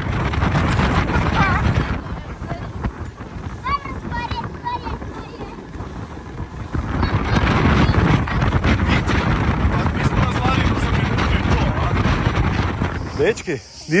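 Wind buffeting the microphone over the rush of a rigid inflatable boat running fast across open water under a 60 hp outboard, with children's shouts. A short gliding swoosh comes near the end.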